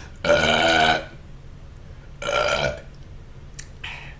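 A man burping twice: a long, loud burp just after the start and a shorter one about two seconds in, from a stomach unsettled by an extremely hot chip.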